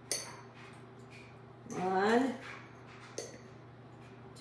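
A metal tablespoon clinking against a baking powder container as a spoonful is scooped and levelled: a sharp click at the start and a lighter one a little after three seconds.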